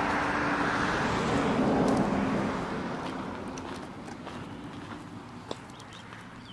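A car driving past. Its engine and tyre noise swell about two seconds in, then fade away. A single sharp click comes near the end.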